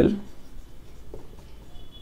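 Marker pen writing on a whiteboard: faint scratchy strokes as letters are written.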